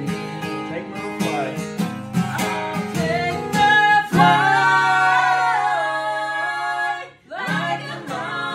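Acoustic guitar strummed under several voices singing a southern gospel song in harmony. About four seconds in the voices hold a long note over a ringing chord, drop out briefly near the end, then the strumming and singing pick up again.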